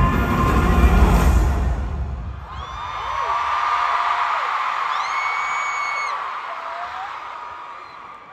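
Loud live-band music with heavy bass and guitar cuts off about two seconds in. It gives way to an arena crowd cheering, with high-pitched screams sliding up and down over the din, fading toward the end.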